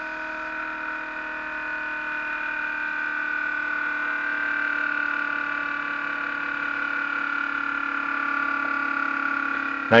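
Muller-type magnet motor running under its Arduino-pulsed driver coils: a steady electrical hum made of several whining tones, which grows a little louder over the first few seconds and then holds steady.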